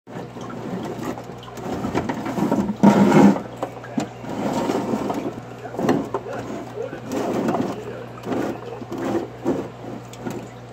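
A person's voice making short wordless vocal sounds in irregular bursts, loudest about three seconds in, over a steady low hum.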